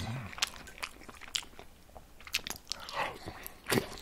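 A person chewing soft spätzle pasta close to the microphone: wet mouth sounds with scattered small clicks.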